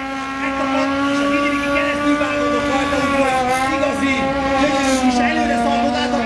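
Quad bike's engine held at steady high revs while it wheelies on its rear wheels, the pitch wavering only slightly.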